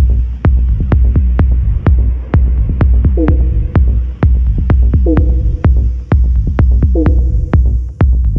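Minimal techno track: a deep kick drum pulsing about twice a second under clicking percussion and a high hiss. From about three seconds in, a short synth note that bends and then holds comes back roughly every two seconds.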